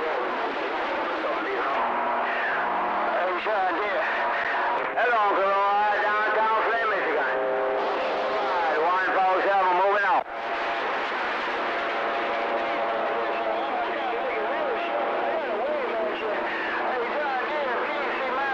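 CB radio receiver on a crowded AM channel 6, with several stations transmitting over one another: garbled, warbling voices mixed with steady heterodyne whistles, the signal meter pinned. A little after ten seconds the signal drops out for an instant and comes straight back.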